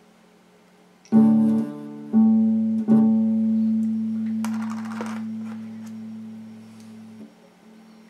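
Electric guitar picked three times in quick succession; the third note rings out and fades for about four seconds before being damped short. A steady amplifier hum sits underneath.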